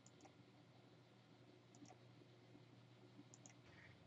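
Near silence: faint room tone with three pairs of soft computer mouse clicks, each pair a press and release.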